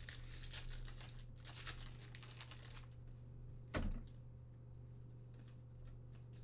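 A trading-card pack wrapper being torn open and crinkled by hand for about three seconds, followed by a single thump a little after halfway, the loudest sound here, then light card handling.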